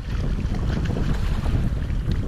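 Wind buffeting the microphone as a steady low rumble, over the wash of choppy sea water.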